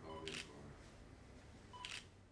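Faint camera shutter clicks, twice, about a second and a half apart, each just after a short beep.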